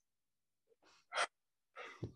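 A man's breathing: a short, sharp breath in about a second into a pause, then a longer breath near the end.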